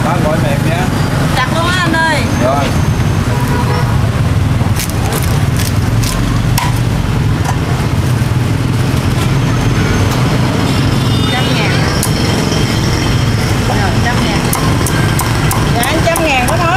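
A cleaver cutting crisp-skinned roast pork on a thick wooden chopping block: scattered sharp knocks, then a quick run of chops near the end. Under it runs a steady rumble of street traffic, with voices in the background.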